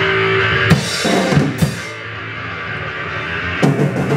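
Raw punk noise band playing live: a held, distorted drone of bass and synthesizer, with drum hits about a second in and again near the end.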